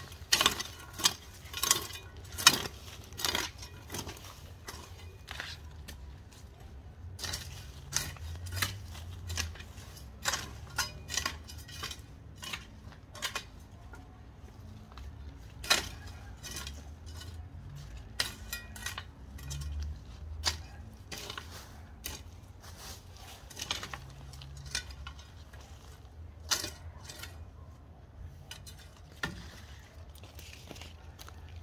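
Metal hoe blade chopping and scraping into dry, stony soil, drawing earth up around young corn plants. Sharp strikes, about two a second at first, then more spaced and irregular.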